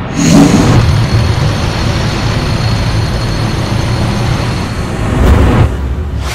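Sound effect of fluid rushing out through a pressure relief valve that has snapped open under a pressure surge: a sudden loud rush with a deep rumble under it. The rush runs steadily, swells again near the end, then falls away.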